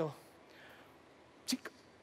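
A pause in a man's speech in a hall: low room tone after the end of a word, then a short, sharp mouth sound from the speaker about one and a half seconds in, with a fainter second one right after it.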